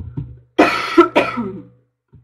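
A woman coughs twice in quick succession, loudly, starting a little after half a second in. A couple of short light clicks come just before the coughs.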